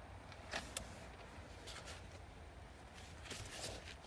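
Faint handling noise inside a truck cab: a few light clicks and rustles, about half a second in, near two seconds and again after three seconds, over a low steady rumble.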